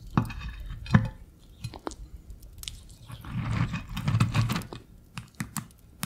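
Ferret licking and chewing coconut close to the microphone, wet and crackly, thickest about halfway through. In the first second a couple of sharp clicks come from the small metal tin set on the glass plate.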